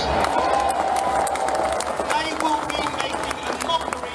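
Outdoor rally crowd clapping and cheering, with scattered shouts among the applause.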